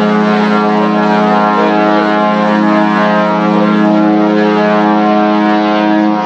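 Cruise ship's horn sounding one long, steady blast at a single low pitch.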